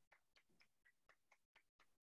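Near silence, with faint, evenly spaced ticking, about four ticks a second.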